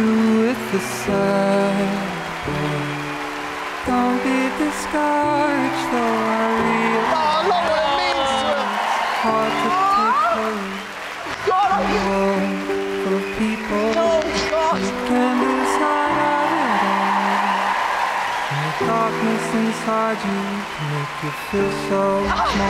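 Loud backing music of held chords under an audience cheering and applauding, with whoops rising and falling over the music and the cheering swelling about two-thirds of the way through.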